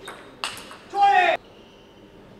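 A table tennis ball struck sharply once, then about a second in a player's short, loud shout as the rally ends.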